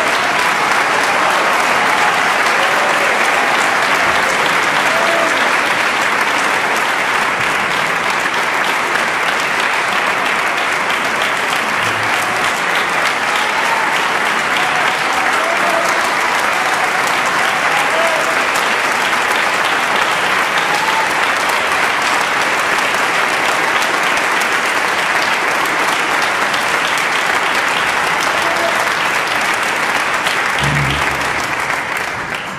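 A large theatre audience applauding steadily and at length, with scattered voices calling out from the crowd.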